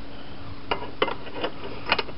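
A few light metallic clicks and clinks, steel parts knocking together as a steel track plate is set onto an angle-iron welding jig, over a steady hum.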